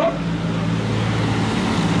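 A steady low mechanical hum with traffic-like noise, filling a short pause in a man's speech through a microphone.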